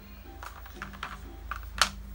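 Plastic felt-tip markers and their hard plastic case clicking and clattering as a child handles them, in a run of light taps with one sharper click near the end. Faint music plays underneath.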